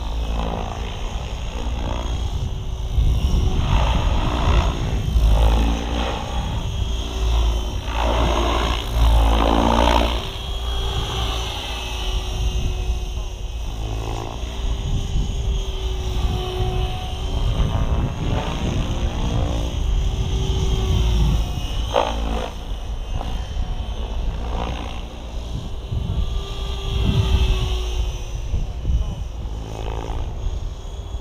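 Align T-Rex 760X electric RC helicopter flying at low head speed, its rotor and motor giving a steady hum that swells and fades as it passes back and forth. Heavy wind buffeting on the microphone rumbles underneath.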